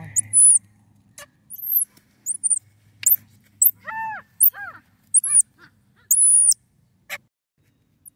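Baby squirrel monkeys giving a scattered string of short, very high-pitched chirps, with a few lower, arching calls about four seconds in.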